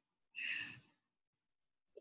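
A woman's short, breathy exhale of exertion, about half a second long, a little way in, followed by near silence.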